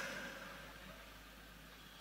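Near silence: a faint hiss that fades away over the first second and then holds low and steady.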